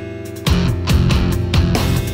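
Background music with a steady beat; the beat and bass drop out for about half a second at the start, then come back in.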